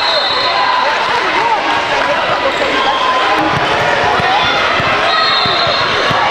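Many voices chattering in a gymnasium during a basketball game. From about halfway through, a basketball is heard bouncing on the hardwood court, with sneakers squeaking briefly near the start and again near the end.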